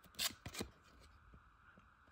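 1991 Pro Set Platinum football cards sliding against each other as the front card is pulled off the stack and moved to the back: a few brief faint swishes in the first second.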